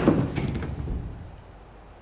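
Pickup truck tailgate being unlatched and dropped open: a clunk right at the start, then a low rattle that dies away over about a second.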